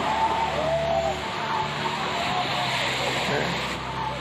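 Busy beach ambience: a crowd of distant voices chattering over a steady rush of noise, with a faint low hum underneath.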